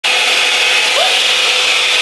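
Revlon One Step Blowout Curls hot-air styler running: a steady rush of blown air with a faint steady motor hum, cutting off suddenly at the end.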